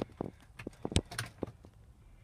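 Several light clicks and knocks inside a car's cabin, the sharpest at the start and about a second in.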